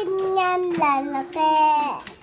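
A young child's voice singing wordlessly in three held notes, the last one the longest.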